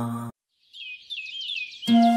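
Chanted mantra music cuts off abruptly, then after a short silence a bird chirps in a quick run of repeated short notes, about six a second. Music with long held tones comes back in just before the end.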